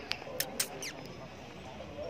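Four or five short, high-pitched squeaky chirps in quick succession in the first second, one falling in pitch, over steady outdoor background noise.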